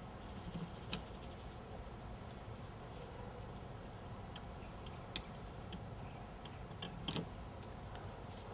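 A few sparse, faint clicks and ticks as hands work the wires loose from an outdoor light fixture at its junction box, the sharpest about a second in, near the middle and near the end.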